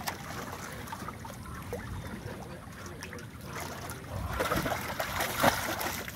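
Water sloshing and trickling around a tarpon held in the water by hand, then louder splashing for a second or so near the end as the water is churned around the fish.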